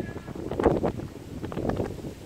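Wind on the microphone, a steady low rumble, with two short louder sounds, one under a second in and one near the end.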